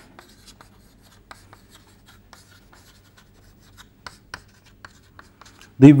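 Chalk writing on a blackboard: a quick, irregular run of faint taps and scratches as words are chalked up.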